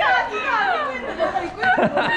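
Speech only: several young people talking over one another in lively chatter.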